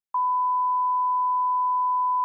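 A steady 1 kHz sine test tone, the line-up tone played with colour bars, starting abruptly just after the beginning and holding at one pitch and level.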